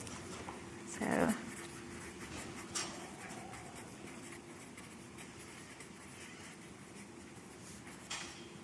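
Felt-tip marker writing on paper: faint, irregular scratching strokes as letters are written. A brief murmur of voice about a second in is the loudest moment.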